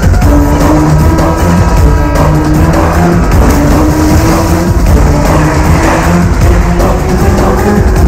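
Action-film soundtrack: loud dramatic music mixed with car engine sound effects, over a low tone that slowly rises in pitch.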